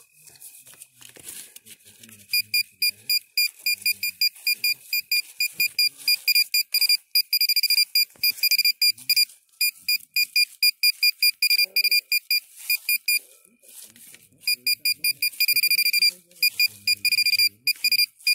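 Metal detector's high electronic tone beeping in rapid pulses, the signal that it is picking up metal in the ground. It starts about two seconds in, stops briefly near the two-thirds mark, then resumes.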